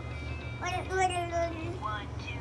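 Toy phone playing an electronic tune: one held note, starting about half a second in and stepping slightly down, for about a second.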